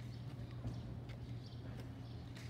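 Footsteps of a person walking on a concrete sidewalk, a step about every half second, over a steady low hum.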